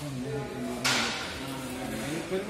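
Indistinct voices talking, with a short, sharp rustle of paper coupon booklets being handled just under a second in.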